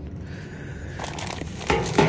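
Thin plastic bag crinkling as a hand grabs and handles the bagged part. It is faint at first, then suddenly louder near the end.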